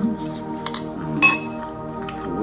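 A metal spoon clinking against ceramic bowls, a few sharp clinks with the loudest just over a second in, over background music with steady held notes.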